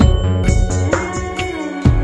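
Background music: a song with a steady drum beat and deep bass, about two beats a second, coming in suddenly at the start.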